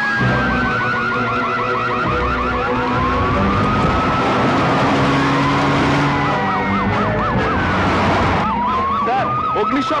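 Electronic alarm sirens sounding together from a wall-mounted loudspeaker siren: long slow wails rising and falling in pitch, overlaid in the second half by fast warbling yelps. The sound of a jail alarm being raised.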